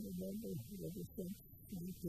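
An elderly man's voice talking, muffled and indistinct, with most of its sound low in pitch.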